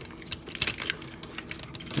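Hard plastic parts of a transforming robot action figure clicking as the torso is pressed and collapsed down, a string of small irregular clicks.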